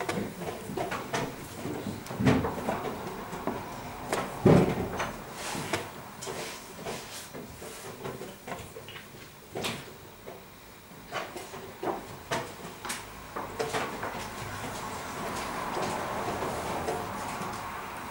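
Wooden chess pieces set down on a wooden board and chess clock buttons pressed during a rapid game: several separate sharp knocks and clicks, the loudest about four and a half seconds in.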